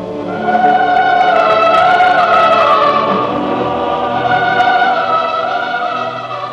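Film score: a choir singing long held, slightly wavering notes over orchestral accompaniment, swelling about half a second in.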